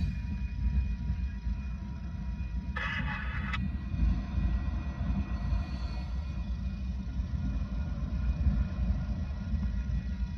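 Freight train of tank cars rolling through a grade crossing: a steady low rumble of wheels on rail, with faint steady tones above it and a brief harsher noise about three seconds in. Heard from inside a car.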